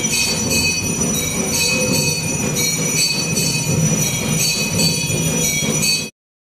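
Bells ringing rapidly and without pause: a dense, steady, high metallic ringing over a low rumble.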